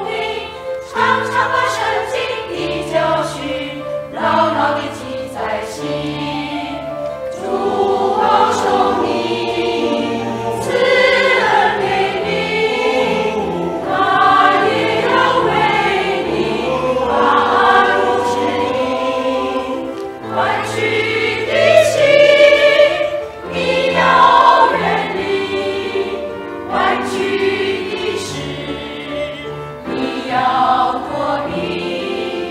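A mixed choir of men's and women's voices singing a hymn in Chinese in parts, with separately recorded home voices blended into one virtual choir. The singing swells louder past the middle.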